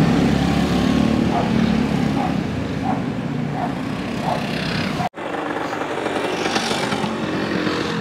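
A line of motor scooters riding past on a street, their small engines running together in a steady drone. About five seconds in, the sound cuts off abruptly and gives way to a steadier, lighter street background.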